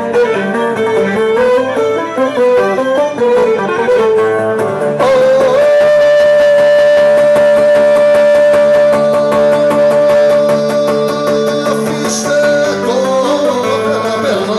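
Live Cretan folk dance music on lyra and laouto: a quick ornamented melody, then a single long held high note of about seven seconds over a steady accompaniment, after which the melody moves on again.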